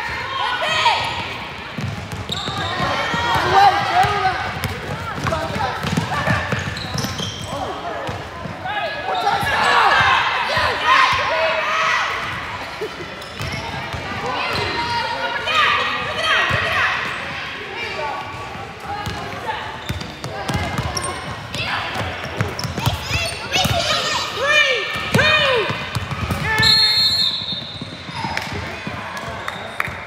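Voices shouting and calling across a large echoing gym during a basketball game, with a basketball bouncing on a hardwood court and sneaker-floor knocks. A short high whistle sounds near the end, as the quarter's clock runs out.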